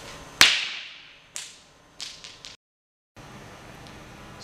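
A thrown rock strikes a clear acrylic basketball backboard once with a sharp crack that rings and echoes off for about a second, with no sound of shattering: the acrylic takes the hit and is left only lightly scratched. A few lighter clicks follow.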